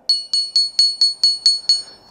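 Toy xylophone with its highest bar, the pink one, struck repeatedly with a mallet. It gives about eight quick, even strikes of the same high ringing note, roughly four a second, to demonstrate a high pitch.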